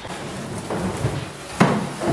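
Things being handled and moved about in a kitchen, with one sharp knock near the end, like a hard object or cabinet door knocking against a cupboard.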